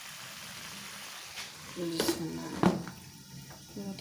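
Bottle-gourd kofta curry simmering in a pan with a steady sizzle. About two seconds in, two sharp clinks come a little over half a second apart as a glass lid is set on the pan. A voice is heard briefly between them.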